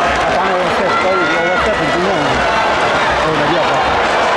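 Large stadium crowd cheering and shouting, many voices calling out at once over a constant din.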